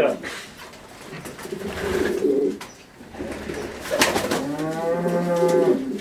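Pigeons cooing in a loft, with a sharp click about four seconds in and one long, low, steady call near the end.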